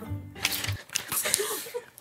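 Brown paper bag rustling and crinkling as it is handled, with scattered sharp clicks and knocks. Background music runs under the first second and then stops.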